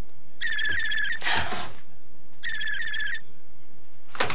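Telephone ringing: two short trilling rings of an electric bell, about two seconds apart. A brief burst of noise follows the first ring.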